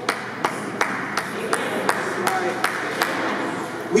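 Hand claps in a steady rhythm, about three a second, with voices murmuring underneath.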